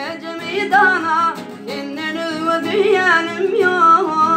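A man singing a Turkmen song in a plaintive voice with sliding, ornamented notes, accompanying himself on acoustic guitar.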